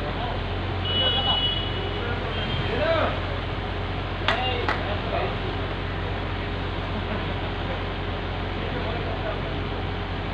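Concrete pump truck's diesel engine running with a steady low drone. A short high-pitched tone sounds about a second in, and two sharp clicks come a little after four seconds.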